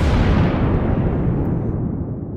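Explosion sound effect: a sudden big boom, then a long rumble slowly dying away, the high end fading first.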